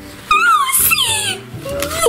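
A girl's high-pitched wordless vocal sounds, sliding up and down in pitch like an excited squeal, then a lower rising 'oh' near the end.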